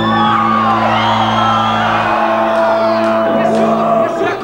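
Live rock band holding a long ringing chord on guitars and bass, as at the close of a song, with shouts and whoops over it. The lowest notes cut off about two seconds in and the rest of the chord stops near the end.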